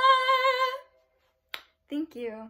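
A young woman's unaccompanied singing voice holding a long high note with vibrato that stops just under a second in. After a pause comes a single sharp click, and her speaking voice starts at the very end.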